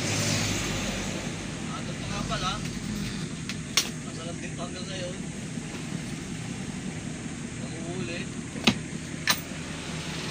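A steady low motor hum in the background with faint distant voices, and three short sharp clicks, about four seconds in and twice near the end, as a boxed cordless rotary hammer is handled.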